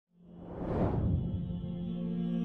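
An intro whoosh sound effect that swells up and fades within the first second, over a sustained low musical drone that starts the background music.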